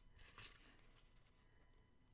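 Near silence: room tone, with a faint brief rustle of a paper napkin being handled about half a second in.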